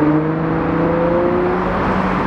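Ferrari 812's naturally aspirated V12 engine pulling away under light throttle, its steady note climbing slowly in pitch and then fading near the end, over general street traffic.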